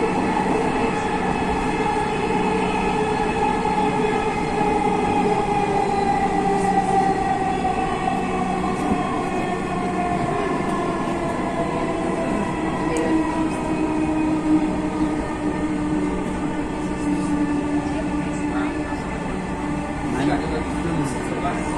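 Dhaka Metro Rail train running, heard from inside the carriage: a steady rumble of running noise with a motor whine whose pitch slowly falls through the middle, and a lower hum that grows stronger near the end.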